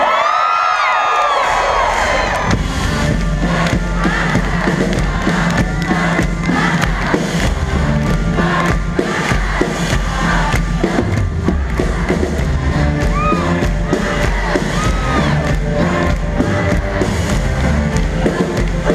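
Live pop-rock band playing loudly, with the audience cheering over the music. The drums and bass come back in about two and a half seconds in after a short drop-out of the low end, then the full band drives on steadily.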